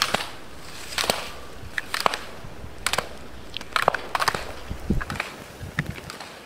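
Slalom skis scraping and crunching on the snow at each turn, in sharp strokes about once a second.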